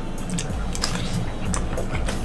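A person chewing food off a spoon, with soft wet mouth sounds and a few light clicks.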